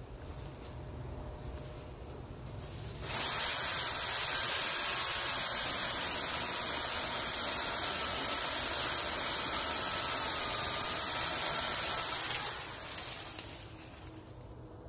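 Electric pole saw starting up with a rising whine about three seconds in, its chain running and cutting through an overhead branch for about nine seconds, then spinning down near the end.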